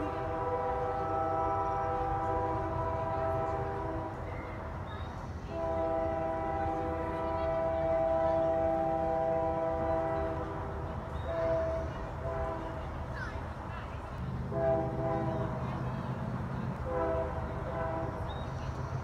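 Nathan Airchime K3H three-chime locomotive air horn sounding a chord: two long blasts, then several shorter ones. A low rumble of the train comes up about two-thirds of the way through.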